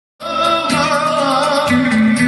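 Turkish folk dance music of the Muğla region: a wavering melody over steady accompaniment, starting abruptly a moment in.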